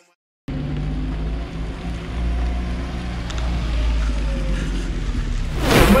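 A car's engine and road noise heard inside the cabin: a steady low hum that begins after a brief silence. Near the end comes a short, louder whoosh, an edit transition effect.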